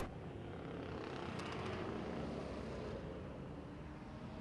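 Faint, steady drone of distant dirt-track race car engines, the cars running slowly under a caution.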